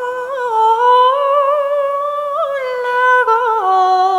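A woman's voice singing a slow traditional Irish song unaccompanied. She holds one long note with slight wavering, then steps down to a lower note near the end.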